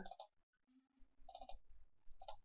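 Two faint computer mouse clicks, about a second and a half in and just before the end, over near silence.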